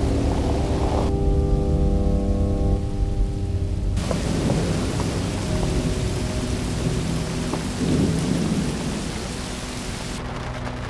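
Rain and rolling thunder over a sustained low drone of held tones. About a second in, the rain hiss drops away for some three seconds, leaving the drone and the low rumble, then the rain returns; there is a swell of thunder near the end.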